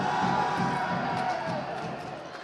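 Crowd noise in an indoor sports arena with music playing over it, easing off a little toward the end.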